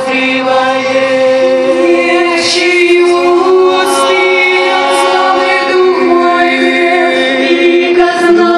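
A women's a cappella vocal group sings long, held chords in close harmony with no instruments. The chord changes twice.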